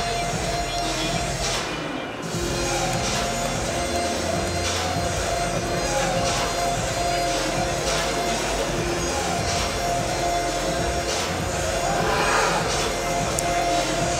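Background music with sustained notes and a steady beat.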